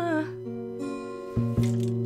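An acoustic guitar song: a sung note with vibrato ends just after the start, then guitar chords ring on, strummed again twice in quick succession about a second and a half in.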